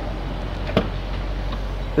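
A single sharp click from the car's trunk latch releasing as the lid is opened, over steady background noise with a low hum.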